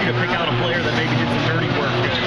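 A person speaking over steady, dense background noise in the gym.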